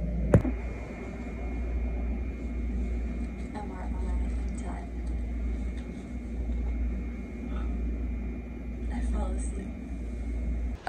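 Steady low rumble of room noise with faint voices in the background, and one sharp click about a third of a second in.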